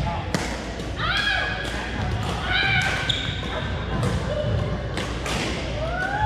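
A badminton rally on a hardwood gym floor: sharp racket strikes on the shuttlecock every second or so, sneakers squeaking and feet thudding on the boards, with voices from the hall.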